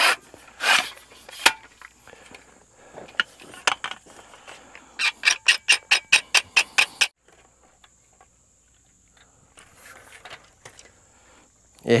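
Long metal grade rod being handled: scraping and knocking, then a quick even run of about a dozen clicks between five and seven seconds in. The last few seconds hold only faint scrapes.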